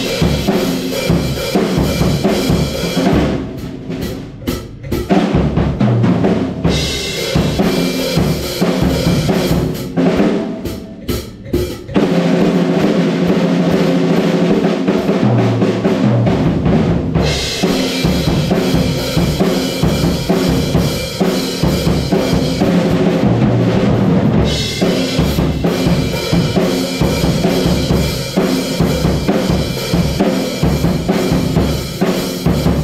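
Acoustic drum kit played hard in a rock groove: fast bass drum, snare and washing cymbals. Twice the cymbals drop out for a few seconds, about a third of the way in and again around the middle, leaving drums alone for short fills.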